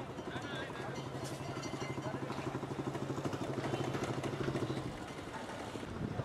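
A motor engine running steadily close by with a rapid even pulse, cutting out about five seconds in, with people's voices faintly in the background.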